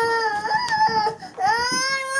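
Bernese mountain dog whining in long, high-pitched drawn-out notes, with a short break a little over a second in. He is fretting at a large sticker stuck on his rump.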